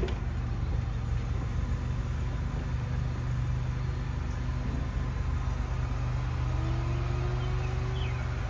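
Steady low mechanical hum. A faint tone slowly rises in pitch over the last two seconds.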